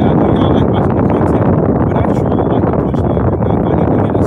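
Car air conditioner blowing: a loud, steady rushing noise inside the cabin.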